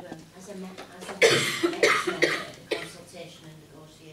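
A person coughing hard about four times in quick succession, close to a microphone, starting about a second in.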